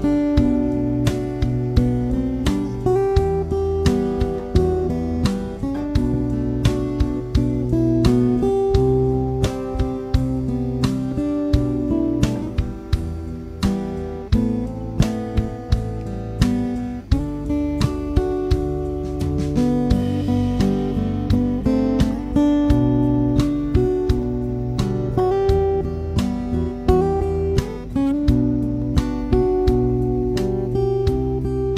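Background music: acoustic guitar playing with a steady beat.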